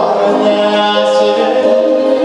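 A male vocalist singing a Tatar song into a handheld microphone, holding long notes that step from pitch to pitch.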